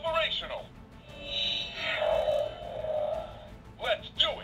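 Electronic voice clips and sound effects from the Voltron toy's built-in speaker: a short spoken line, then a sustained electronic effect with music-like tones lasting about two and a half seconds, then another voice clip starting at the very end.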